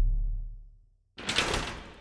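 Edited-in deep impact sound effect, a heavy boom that dies away over about a second, followed a little over a second in by a second, hissier hit that also fades.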